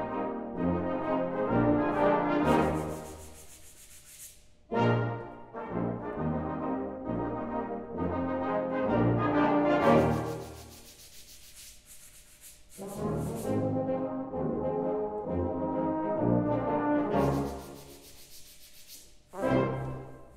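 Brass band playing in phrases, with sandpaper blocks rubbed together in long rubbing strokes three times, each lasting about two seconds as a phrase ends.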